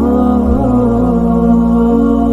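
Background music: a slow, chant-like melody over long held drone tones.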